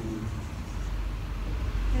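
Low rumble of road traffic, swelling near the end.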